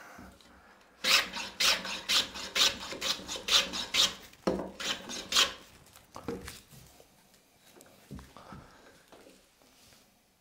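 Hand plane taking shavings off the edge of a wooden board to cut a bevel: a quick run of short cutting strokes, about three a second, for around four seconds, then a few fainter scrapes.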